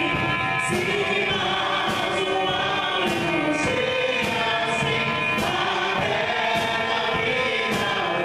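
Live contemporary worship music: a woman singing lead into a microphone, with other voices joining in, over a drum kit and electric guitar. The drum hits fall steadily about once a second.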